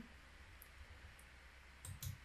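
Near silence with a few faint computer mouse clicks, the last and loudest near the end.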